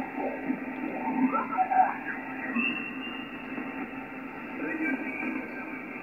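Icom IC-7800 HF transceiver's speaker playing upper-sideband voice on the 17-metre band while the dial is turned: garbled contest stations slide in and out of tune over steady static hiss, with a few gliding whistles. The audio is narrow and thin, with nothing above the receive filter's cut-off.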